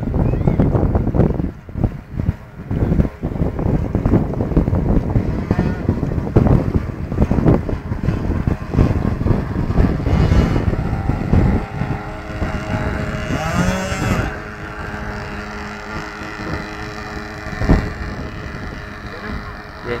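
Wind buffeting the microphone, loud and gusty through about the first twelve seconds. After that a pilot boat's motor runs steadily with a hum of several held tones, and a brief wavering glide comes a little later.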